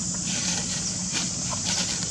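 A long-tailed macaque crying out, a call of about a second and a half that starts a moment in, over a steady high hiss.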